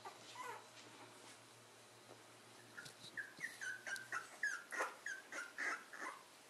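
Very young corgi puppies crying: from about three seconds in, a run of short, high-pitched cries, each dropping in pitch, coming two or three a second.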